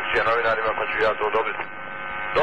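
A man talking over a telephone line in a recorded, intercepted phone call, the voice thin and narrow as a phone line makes it, pausing briefly near the end.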